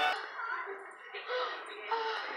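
Faint background voice and music, with no clear cooking sound above it.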